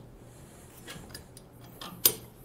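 A few faint metallic ticks as a spring clip is fitted onto the steel pin of a trailer-hitch ball mount, a small cluster about a second in and one more near the end.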